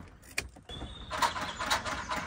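Land Rover Discovery 3 EGR valve noise at engine switch-off: a click, a short thin whine, then several harsh rasping bursts. The owner puts the noise down to friction inside the valve, and the EGR valve turned out to be the fault.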